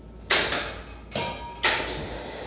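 Three sharp metal clanks, the second leaving a short ringing tone, as a fire-extinguisher cylinder's threaded adapter is coupled to the hanging steel hydrostatic test head.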